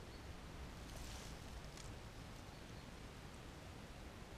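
Faint handling noise of the sticks of a Paiute deadfall trap as its bait stick and trigger are set under a propped flat rock. There is a brief scrape about a second in and a light click just after, over a low steady rumble.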